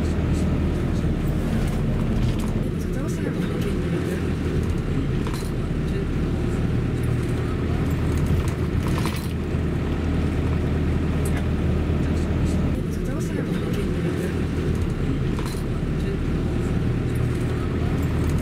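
Steady low engine and tyre rumble of a car driving along, heard from inside the cabin.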